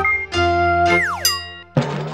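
Short cartoonish synth jingle for an animated channel logo: a sustained bright chord, a whistle-like tone sliding steeply down about a second in, then a fresh chord struck near the end.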